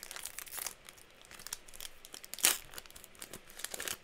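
A trading-card booster pack wrapper being torn open and crinkled by hand: a run of sharp crackles and rustles, the loudest tear about two and a half seconds in.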